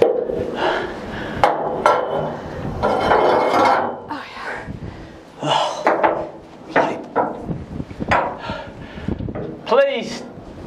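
Metal clinks and knocks of a socket wrench working on steel bolts and fittings, with muffled voices in between.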